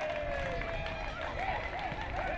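Football-match field sound: voices calling out, one long call falling in pitch, then quick repeated short calls near the end, over a steady low background rumble.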